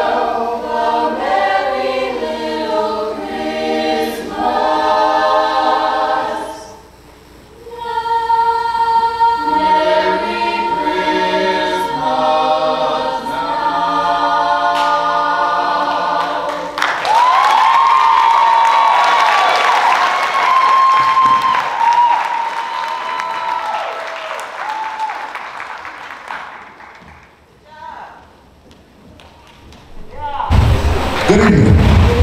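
A choir sings, with a short breath pause about seven seconds in, and ends on a held chord. Audience applause follows and fades away over about ten seconds.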